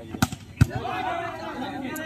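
A volleyball struck hard twice, two sharp smacks a little under half a second apart, the second the louder: the attack at the net and the defender's hit that sends the ball back up. Shouting voices follow.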